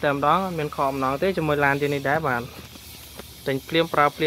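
Speech only: a person talking, with a pause of about a second in the second half.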